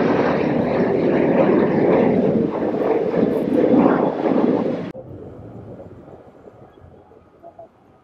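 Jet airliner passing low overhead, its engine noise loud and steady, cut off suddenly about five seconds in, after which only faint background noise remains.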